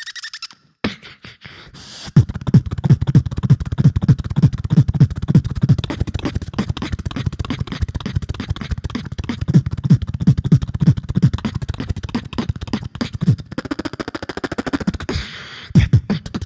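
Live beatboxing through a microphone on a PA: a fast, steady beat of deep bass kick sounds and sharp clicks and snares, starting about two seconds in after a brief pause. Near the end the beat gives way to a held humming tone, then comes back.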